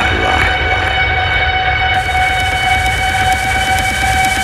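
Techno track: a held high synth chord sustained over a steady low bass line, with a short falling sweep at the start. A hissing top end of hi-hats comes back in about halfway through.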